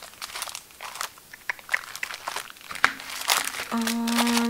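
Paper planner inserts and a clear plastic sheet being handled and shuffled, giving irregular crinkling and rustling with small clicks.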